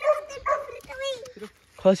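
People's voices talking and calling out, with a brief pause near the end before a loud call.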